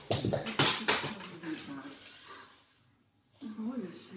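Quiet talk, with several sharp knocks and handling noises in the first second, likely toys being moved around.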